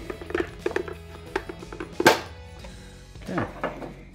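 The white plastic cover of a refrigerator ice maker head being prised off: a few small plastic clicks, then one sharp snap about two seconds in as the cover comes free.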